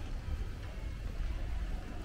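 Steady low rumble of wind on the microphone over faint outdoor background noise.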